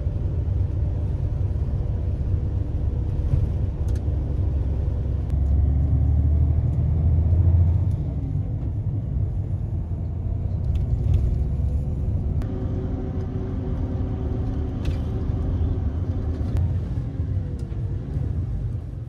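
Inside a highway coach's cabin: a steady low rumble of the engine and the tyres on the road, with a faint hum above it. It swells a little about five to eight seconds in.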